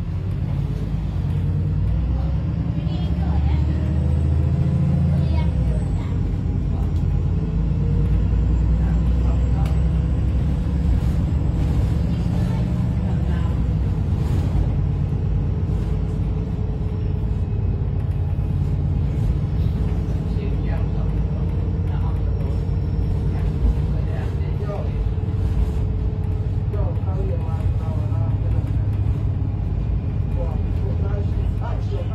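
Interior of a VDL SB200 Wright Pulsar 2 single-deck bus on the move: the diesel engine and driveline rumble steadily, with a whine that rises and falls in pitch as the bus accelerates and eases off. Voices are heard faintly over it.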